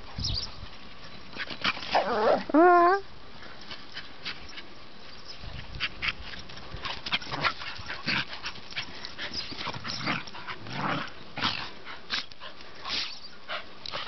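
Two small dogs at rough play: a loud, wavering, whine-like yelp about two and a half seconds in, then scuffling and short yips as they wrestle.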